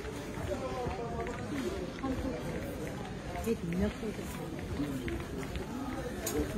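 Indistinct voices of shoppers talking in a crowded store, with faint clicks and rattles among them.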